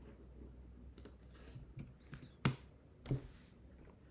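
A computer mouse clicking several times, the clicks under a second apart, as buttons are pressed on an on-screen calculator. The loudest click comes a little past halfway. The last click is followed by a short soft hiss.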